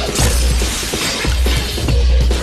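Action-film soundtrack: electronic music with a heavy, pulsing bass beat, and a crash with a shattering sound at the start during a sword fight.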